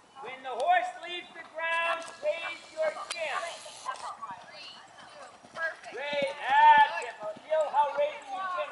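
Indistinct voices talking, with horse hoofbeats at a canter in a sand arena.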